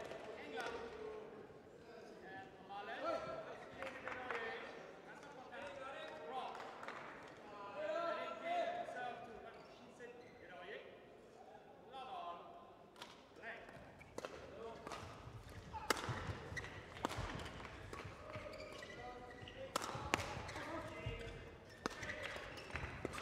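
Badminton play: sharp racket hits on the shuttlecock and footfalls on the court floor, starting about halfway through and coming thick and fast near the end. Faint voices carry through the hall before play starts.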